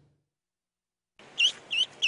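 Near silence for about a second, then a duckling peeping: short, high peeps, about three a second.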